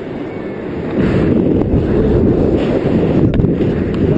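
Wind buffeting the action camera's microphone during a tandem paraglider flight, a loud low rushing that gets louder about a second in.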